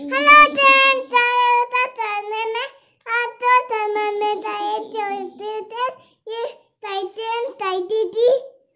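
A young girl singing a tune in a high voice, with several long held notes.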